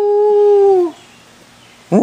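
Basset hound howling: one long, steady howl that drops in pitch as it ends about a second in, then a short, loud call near the end.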